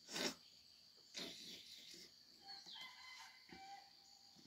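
The tail of a throat-clearing cough at the very start, then a softer breathy noise about a second in. A rooster crows faintly near the end, heard as thin pitched calls with a falling glide.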